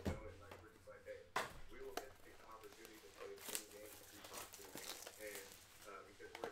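Scattered clicks, taps and crinkling of plastic trading-card supplies (top loaders and sleeves) being picked up and handled on a table, with a faint background voice underneath.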